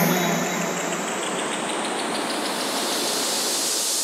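Electronic music build-up: a wash of synthesized white noise with a sweep rising steadily in pitch, a riser between sections of a chill-out track.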